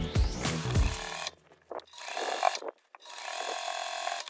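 Background music that stops about a second in, then an electric sewing machine stitching fabric in two short runs, its motor humming steadily with a brief pause between them.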